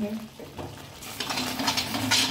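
A metal spatula stirring thick, frying masala in a metal kadhai, scraping with a soft sizzle; it starts about a second in. The salt just added is being mixed into masala that has begun to release its oil.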